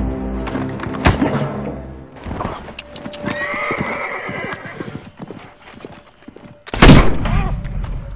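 Film soundtrack: a horse whinnying and hoofbeats amid a struggle, over a low music drone that fades after about two seconds, with a sharp hit about a second in. A loud bang near the end is the loudest sound.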